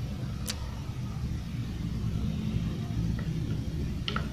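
A steady low rumble, with one sharp click about half a second in.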